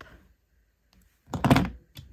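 A single dull thunk on the tabletop about one and a half seconds in, as something is set down or pressed onto it.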